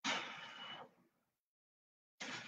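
A man's forceful exhale from exertion during donkey kicks, starting suddenly and fading out within about a second.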